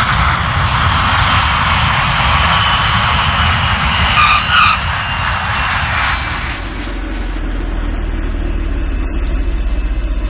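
Boeing 747 jet airliner landing: a loud jet roar, with two short tyre squeals about four and a half seconds in as the main wheels touch the runway. The roar fades out around six and a half seconds in, leaving a low, steady car engine rumble.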